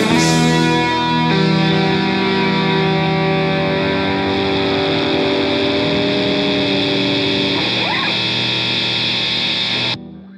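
The final chord of a rock song: guitar and band hold a sustained chord that rings on, then cuts off suddenly near the end.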